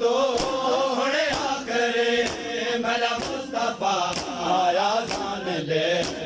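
A noha (Shia Muharram lament) chanted by male voices, with the crowd's matam chest-beating striking as an even, sharp beat about twice a second.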